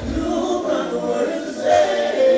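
Live R&B band music with several voices singing together, with no deep kick-drum hits for most of this stretch.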